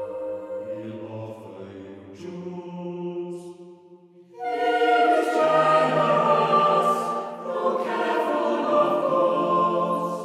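Mixed chamber choir singing unaccompanied in English. Soft held chords with a lower voice moving beneath them give way, after a brief dip about four seconds in, to the full choir entering louder with quicker moving parts.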